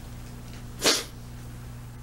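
A single short, sharp sniff through the nose from a man who is crying, a little under a second in, over a steady low hum.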